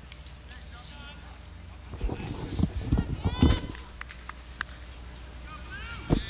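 Voices shouting out on a soccer field: a few faint calls, then louder shouted calls between about two and three and a half seconds in, over a low steady hum.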